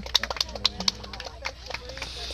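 Irregular sharp clicks and taps, most of them in the first second and a half, over faint voices in the background.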